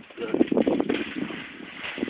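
Running footsteps on wet grass, a quick, uneven series of thuds that thins out after about a second as the runner reaches the water.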